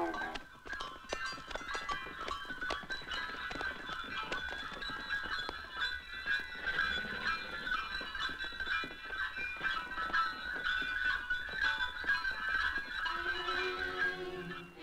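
Horse hooves clip-clopping in an irregular run of clicks, with music in the film's soundtrack.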